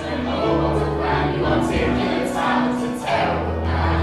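A stage-musical ensemble singing together over instrumental accompaniment, with held notes and sustained low bass tones.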